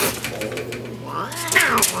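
A cat yowling at another cat through a screen door: a long, wavering cry that starts about halfway in, over scratchy rattles of paws striking the screen mesh.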